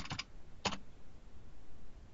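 A few keystrokes on a computer keyboard as a password is typed in: a quick cluster at the start and a single sharp tap a little after half a second in, with fainter taps between.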